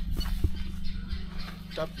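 Thin plastic carrier bag rustling and crinkling as it is handled, with a sharp click about half a second in, over a steady low hum.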